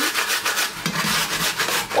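Half an onion grated on a stainless-steel box grater in repeated strokes.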